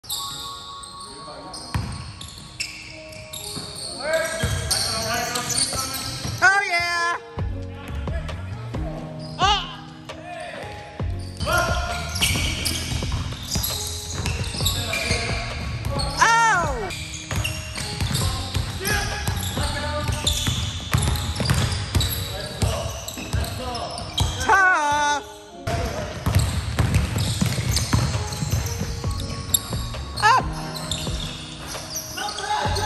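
A basketball pickup game on a hardwood gym floor: a ball bouncing, sneakers squeaking sharply several times, and players' voices echoing in the large hall.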